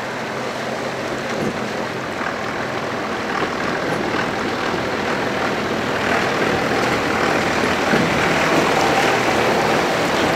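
Pickup truck engine running as it drives through a shallow creek, with water splashing and rushing around the tyres. It grows steadily louder as the truck approaches and passes close by.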